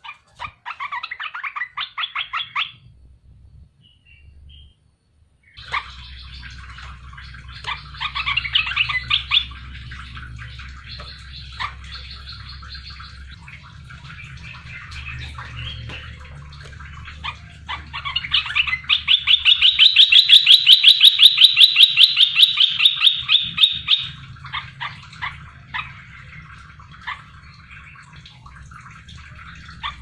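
Bulbul (merbah belukar) calling in bursts of fast, chattering trills, with a brief pause early on and a loud, sustained burst in the second half. A faint steady low hum runs underneath.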